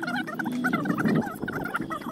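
Turkey-like gobbling: rapid, wavering warbling calls repeated throughout.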